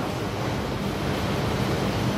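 Steady background hiss of room noise with no distinct events.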